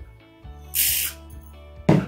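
A ceramic bowl set down on a plastic tabletop, one sharp knock near the end, over faint background music. A short hiss comes about a second earlier.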